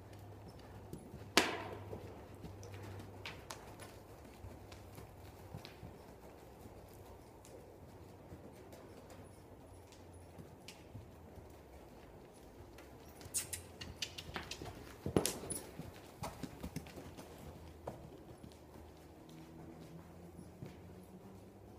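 A ridden horse's hooves on the sand footing of an indoor arena: scattered muffled footfalls and clicks as it passes, with one sharp knock about a second in and a flurry of clicks about two-thirds of the way through, over a faint steady hum.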